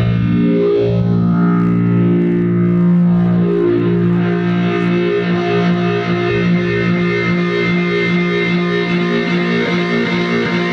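Rhodes Mark I electric piano played through a multi-effects unit, its sustained notes heavily processed; the pitches slide in the first second as the effects are adjusted, then settle into a steady pulsing pattern of held notes from about four seconds in.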